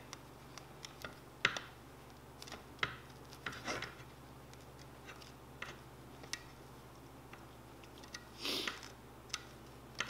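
Faint scattered clicks and soft rubbing of a cloth rag and fingertips pressing a heated vinyl chassis skin down onto an RC truck chassis, with a louder soft rush near the end. A faint steady low hum runs underneath.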